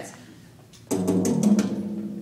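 Virtual drum kit in the GarageBand app on an iPad, played by tapping the screen. About a second in comes a quick run of drum hits, whose low tones keep ringing afterwards.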